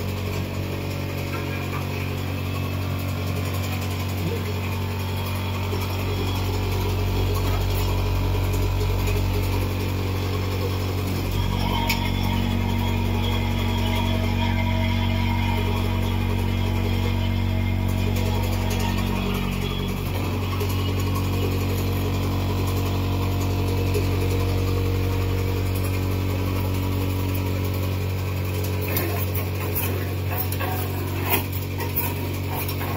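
Capping machine line running: a vibratory bowl feeder and conveyors give a steady mechanical hum, whose tone shifts about twelve seconds in and again about twenty seconds in. A few sharp clicks come near the end.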